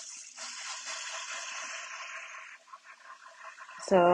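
Wet, clay-covered hands rubbing over the slurry on a spinning pottery wheel head, a steady hissing swish that fades out about two and a half seconds in.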